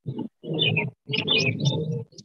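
A person's voice making loud, drawn-out wordless vocal sounds in two stretches, the second starting about a second in.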